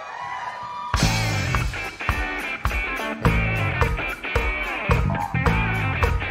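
Recorded funk song played by a full band: a short quieter lead-in, then about a second in the drums, bass and guitar come in together on a steady, heavy beat.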